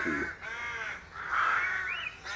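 A crow cawing twice, each call about half a second long.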